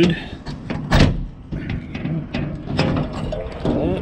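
Semi-trailer rear door being unlatched and opened: a loud metal clunk about a second in as the lock releases, followed by lighter rattles and knocks of the door hardware.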